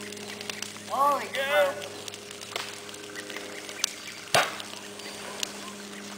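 A homemade creamer cannon firing: one short, sharp pop about four seconds in as its compressed-air charge blows powder through a flame into a fireball. A steady low hum runs underneath.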